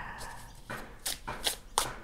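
A tarot deck being shuffled by hand, the cards sliding against each other with a soft rustle and then a handful of short, crisp card-on-card slaps in the second half.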